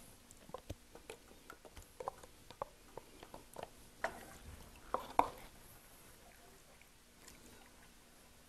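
A wooden spoon scraping thick sauce out of a plastic tub into a skillet and stirring it: faint scattered taps and clicks against the tub and pan, with a few louder knocks about four and five seconds in.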